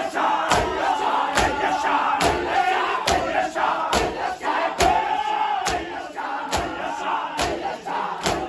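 Many men beating their bare chests in unison in matam: a sharp slap a little more than once a second, with the voices of a crowd of men chanting between the beats.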